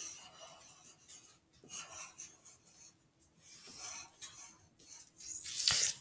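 Pencil scratching on paper in several short strokes with brief pauses between them, drawing curved petal outlines; faint.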